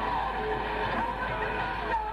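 Heavy metal band playing live: distorted electric guitars with bending, gliding lead lines over bass and drums, in a dull-sounding concert recording with little treble.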